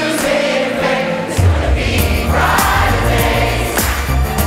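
A large community choir of hundreds of voices singing an uplifting song together over backing music. A strong bass comes in about a second and a half in.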